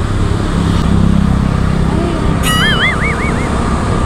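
Steady low rumble of a road vehicle's engine, with a short, high warbling whistle that wavers up and down several times about two and a half seconds in.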